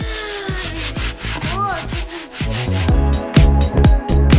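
Dry rubbing hiss of sand being sifted through a plastic colander and poured into a tray, under upbeat background music whose beat comes back strongly about three seconds in.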